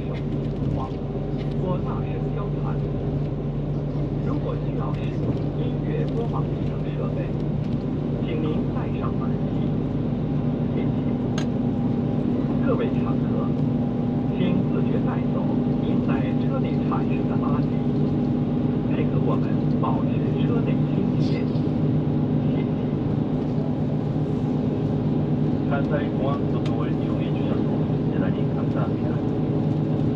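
Airport coach's engine and road noise heard from inside the passenger cabin: a steady low drone that grows a little louder about ten seconds in as the bus gathers speed.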